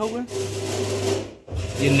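A steady low hum runs through, with bits of speech near the start and end.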